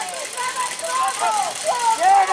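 Distant shouted voices from the football field, short high calls that rise and fall, as a play is called and snapped. A steady hiss runs underneath.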